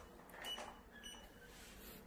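Near silence: room tone in a small room, with a faint brief sound about half a second in.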